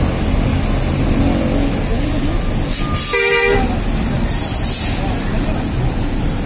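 Bus horn giving one short toot about three seconds in, over the steady low rumble of bus engines. A brief hiss of air follows about a second later.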